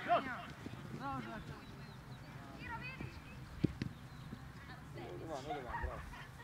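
Scattered shouted calls from youth football players across the pitch, in short bursts, with two short sharp knocks just past the middle.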